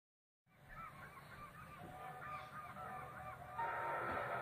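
A flock of birds calling over one another in short rising-and-falling honking calls. They fade in about half a second in and grow steadily louder, and a louder sound with held tones joins near the end.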